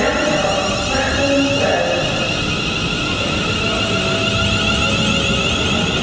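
Siemens Desiro Class 350 electric multiple unit pulling away and gathering speed: its traction inverters give off an electronic whine of held tones that shift in pitch, over a steady rumble of wheels on rail.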